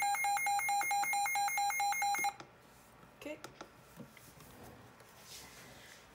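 Midland WR120EZ weather alert radio sounding its alert-test alarm as a rapid electronic beeping, about five beeps a second, that cuts off abruptly a little over two seconds in.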